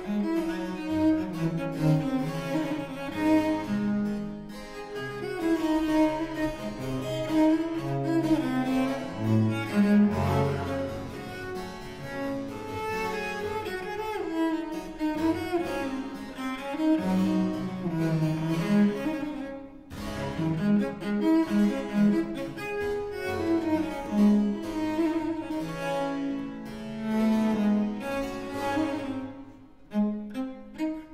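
A Baroque cello made in Paris in 1743 by Andrea Castagneri, bowed in a fast D-minor movement with harpsichord accompaniment. The playing stops for a moment about twenty seconds in, then carries on.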